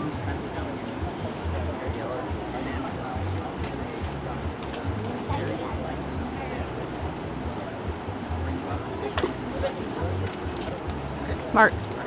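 Steady rush of shallow river rapids, with wind buffeting the microphone in low gusts and faint low voices underneath. A short spoken call comes near the end.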